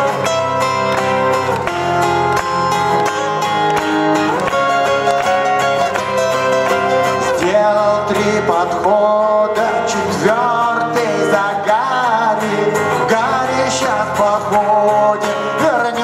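Live acoustic song: two acoustic guitars playing, joined by a male voice singing from about halfway through.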